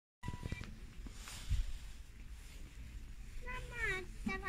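Quiet shop background with a short beep just after a cut, a few soft knocks, and a voice sliding down in pitch near the end.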